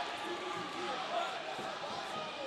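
Faint, indistinct voices of a crowd murmuring in a large hall, a steady background with no single clear sound standing out.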